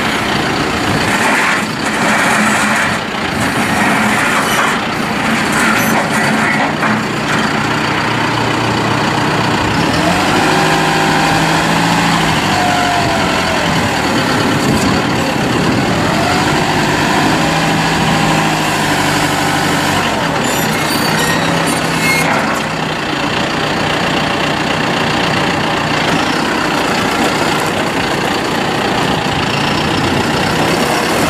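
John Deere 5100E tractor's turbocharged four-cylinder diesel running steadily while the tractor moves and works its front loader. In the middle the pitch rises and falls twice as the loader bucket is raised.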